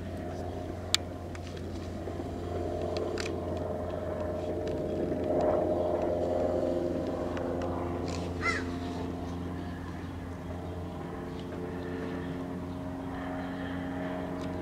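Steady engine-like drone with several held tones, swelling slightly louder around the middle. There is a sharp click about a second in and a brief rising chirp about eight and a half seconds in.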